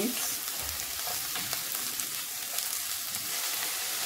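Sliced onions, spring onions and red and green bell peppers sizzling steadily as they stir-fry in a little oil in a stainless steel pan, stirred with a silicone spatula that makes a few faint ticks.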